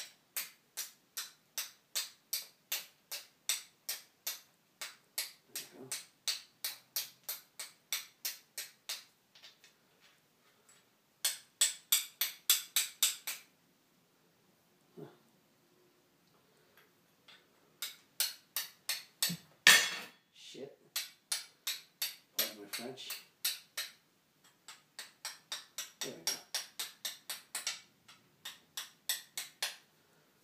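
Flint being struck against a fire steel over and over, sharp clicks about three a second in runs with short pauses, one run louder and faster. The strokes are made to throw sparks onto char cloth in a tinder box.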